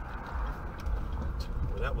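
Steady low rumble of engine and road noise inside a moving car's cabin, with a man's voice briefly near the end.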